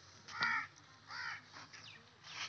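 A crow cawing: two calls about half a second apart, the first louder.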